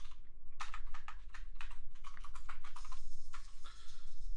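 Typing on a computer keyboard: a quick run of key clicks starting about half a second in.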